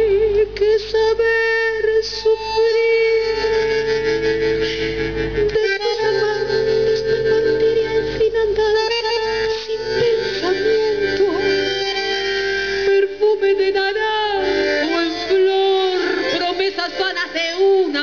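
Live tango played by bandoneons and a double bass, with a woman singing held, wavering notes over the accompaniment.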